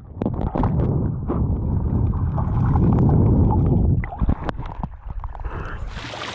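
Muffled rumbling and gurgling of water recorded with the camera held underwater, stirred by a swimmer's movements. It grows quieter about four seconds in, with a few knocks.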